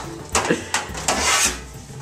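A metal baking sheet pulled out of the storage drawer under an electric stove: a few sharp clanks, then a longer scraping slide of metal against metal.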